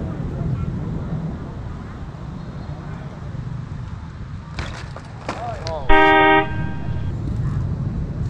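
A vehicle horn sounds once, briefly and loudly at a steady pitch, about six seconds in, over a steady low rumble of street noise and wind on the microphone. A few sharp clacks come just before the horn.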